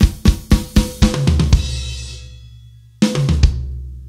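Drum kit played in a broken sixteenth-note fill: a run of even drum strokes about four a second with low drum tones ringing on. About three seconds in comes a single loud hit with a cymbal, and the drums and cymbal then ring out and fade.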